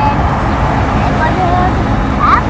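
Steady rumble of a car on the road heard from inside the cabin, with a young child's high-pitched voice calling out in short held notes over it.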